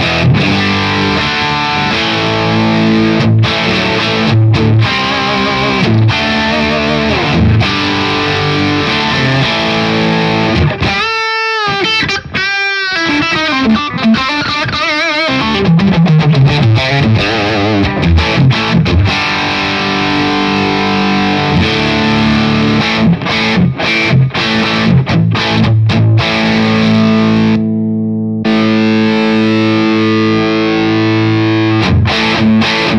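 Distorted electric guitar, a Fender Telecaster played through a breadboarded distortion pedal circuit: riffs and chords, with wide vibrato string bends about 11 to 13 seconds in, a slide down a few seconds later, and a held, ringing chord near the end.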